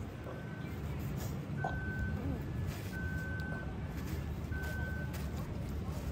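A vehicle's reversing alarm beeping: a single steady high tone sounding four times, about one and a half seconds apart, the first faint, over a low engine rumble.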